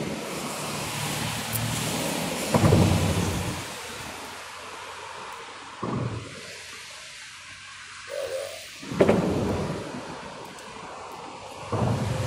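Thunder rumbling over a steady hiss, with two louder peals that start suddenly and die away over a second or two, one about a quarter of the way in and one about three-quarters in.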